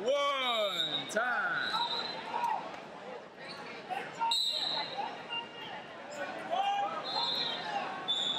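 Loud shouts as the period clock runs out, then about four short, high whistle blasts from referees in the hall over crowd chatter.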